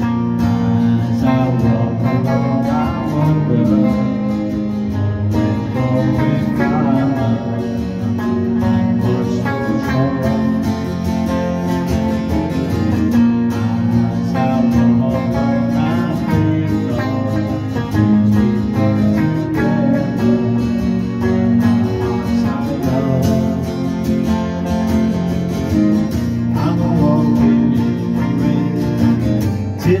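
Electric guitar being played in a full-sounding instrumental passage of a song, with steady low bass notes under it.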